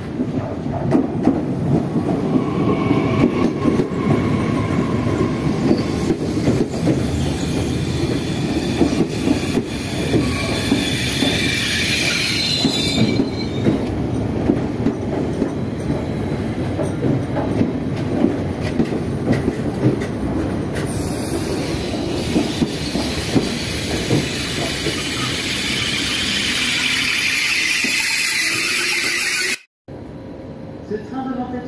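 TER regional electric train rolling in alongside a station platform. A steady rumble carries throughout, with high squealing tones from the wheels rising and fading twice. The sound cuts off abruptly near the end.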